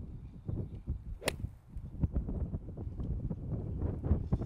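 A golf iron strikes a ball once, a single sharp crack about a second in, over a low rumble. It is a clean strike without a steep, deep divot.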